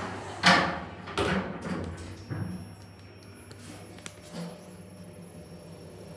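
Lift car's sliding doors closing, meeting with a loud knock about half a second in, followed by a few smaller knocks. A low steady hum follows as the lift travels down.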